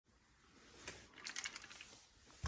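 Faint, quick clicks and light taps: one a little under a second in, then a rapid cluster of several over the next half second.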